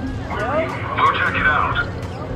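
Speech: a voice talking, loudest in the second half, over a steady background murmur.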